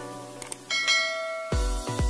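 A bell-chime notification sound effect rings for under a second over background music, preceded by a short click. A heavy electronic bass beat comes in about a second and a half in.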